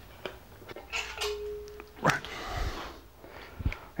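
Cylinder head being lifted off an engine block and carried away: scattered knocks and handling noises, a short steady squeak-like note about a second in, and a sharper knock about halfway through.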